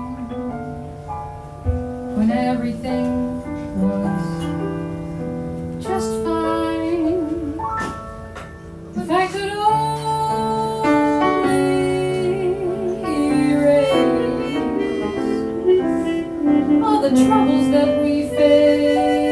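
Live band music: a woman singing over piano chords, with light drums and percussion. A harmonica plays along in the second half, holding long notes with vibrato.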